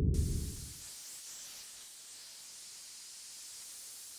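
A low rumble that dies away within the first second, then a steady, faint hiss with no tones in it.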